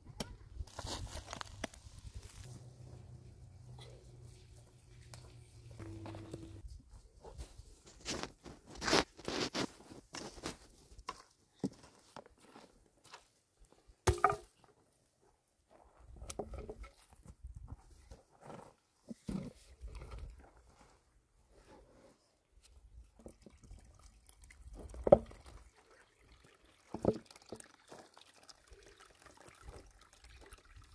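Irregular scraping, crunching and knocking of hand digging in stony soil with a pick, with a few sharp, louder knocks.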